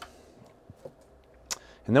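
Bonsai scissors cutting a branch tip on a Shimpaku juniper: one sharp snip about one and a half seconds in, after a couple of faint clicks.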